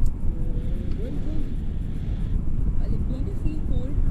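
Wind buffeting an action camera's microphone in tandem paraglider flight, a steady low rush, with muffled voices talking faintly beneath it.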